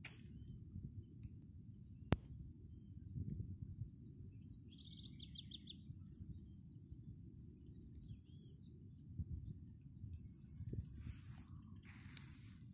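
Outdoor ambience of insects keeping up a steady high-pitched drone, with scattered short bird calls, including a quick trill about five seconds in. Beneath them runs a low rumble of wind and handling on the phone's microphone, and a single sharp click comes about two seconds in.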